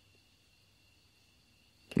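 Near silence: quiet room tone with a faint steady high-pitched hum, then a man's voice starts speaking just before the end.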